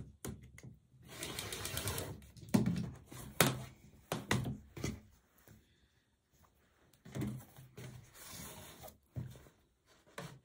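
An acrylic quilting ruler and fabric strip sets handled on a cutting mat: a stretch of sliding and rustling, then a few sharp knocks and taps, the loudest about two and a half and three and a half seconds in, with softer rustling near the end.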